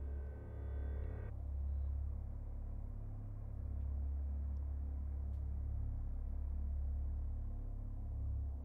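Dark ambient background music: a deep, steady low drone, with a higher held chord over it that cuts off about a second in.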